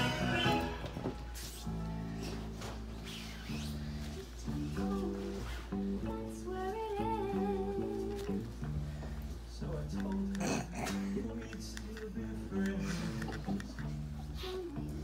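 Music playing: a pop song with guitar and a singing voice. A low steady hum runs underneath.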